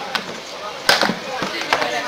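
White plastic chair knocking against a tiled floor as a young orangutan pulls it over and handles it: a handful of sharp knocks, the loudest about a second in.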